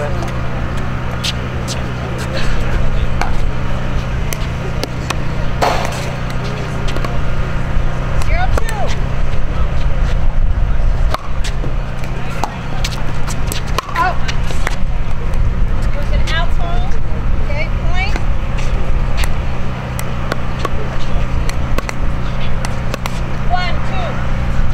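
Sharp pops of pickleball paddles striking the plastic ball, coming at irregular intervals through a singles rally. Under them runs a steady low rumble, with faint distant voices now and then.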